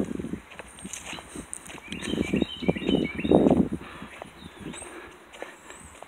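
Footsteps on a paved asphalt road at a walking pace, the scuffs loudest a few seconds in. A small bird chirps a quick run of short notes over them, about two to three seconds in.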